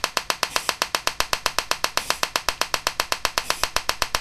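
Homemade TEA nitrogen laser firing repeatedly: a steady train of sharp electrical discharge snaps, about ten a second.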